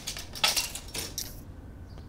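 A steel tape measure being handled while stretched across the floor, giving about three short metallic rattles; the loudest comes about half a second in.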